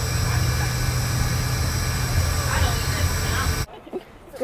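School bus engine and road noise heard from inside the cabin: a steady, loud low rumble with hiss, and faint voices under it. It cuts off suddenly near the end.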